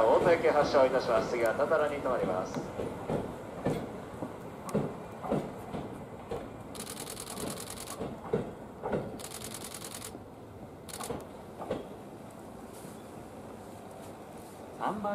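A station platform announcement ends in the first two seconds, then an electric train's wheels knock over rail joints at irregular, slowing intervals, fading away. Two short high hissing bursts come near the middle.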